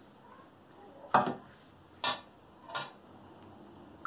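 A metal fork clinks three times against a ceramic plate while vegetable pieces are set onto the rice. The first clink is the loudest and the second rings briefly.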